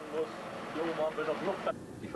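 Faint men's voices talking, with an abrupt drop to quiet near the end.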